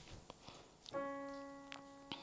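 A single piano note played on a digital keyboard, struck about a second in and left to die away slowly. It is a reference pitch for singing the song in its original key.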